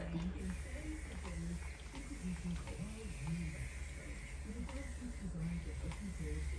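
Indistinct voice talking quietly in the background, over a steady low hum.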